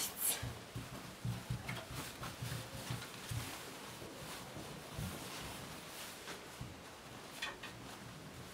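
Faint rustling and soft, irregular bumps of a satin flounce being handled and turned on a table, busiest in the first few seconds.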